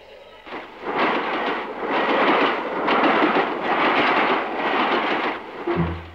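Loud, dense rushing noise on a film soundtrack that swells and fades about once a second; plucked low strings of the score come in just before the end.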